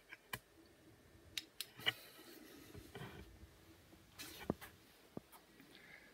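Faint, scattered clicks and knocks of handling noise, about half a dozen short taps spread over a few seconds with quiet between them.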